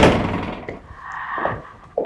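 A door banging open, a sudden loud hit whose sound dies away over about half a second, followed by faint shuffling.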